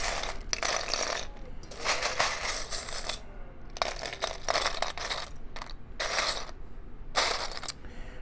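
Loose Mould King plastic building bricks clattering as a hand rummages through a pile of parts to find one piece. The clicks come in rattling runs with a couple of short pauses.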